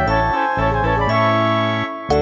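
Background music: a light tune of pitched notes over a sustained bass line.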